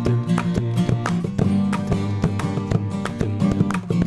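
Instrumental break in a multitrack song: acoustic guitar strumming over held, layered backing vocal harmonies, with clicking mouth percussion.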